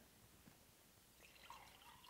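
Near silence, then about halfway through water from a glass pitcher begins pouring faintly into an empty drinking glass.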